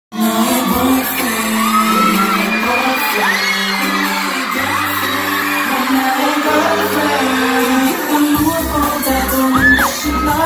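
Live K-pop music with singing, heard loud and echoing from the audience of a concert hall, with the crowd's cheering over it. A steady bass beat comes in near the end.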